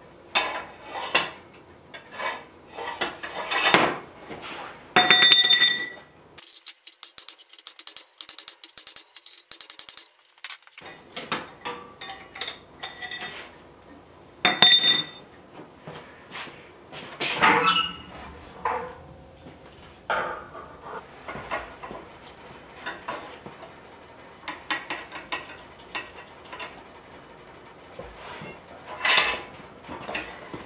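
Repeated metal clanks and clinks, some ringing briefly, as a hot metal bar is worked in a bench vise with a metal pipe slipped over it as a bending lever.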